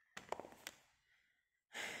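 A few short clicks in the first half second, then near the end a woman's long, breathy sigh of weariness.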